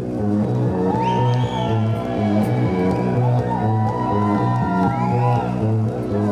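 Live band music: electric guitar playing sliding, bending notes over a steady repeating bass line.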